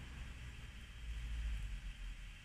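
Low, uneven rumble of wind buffeting an outdoor microphone, swelling about a second in, over a faint steady hiss.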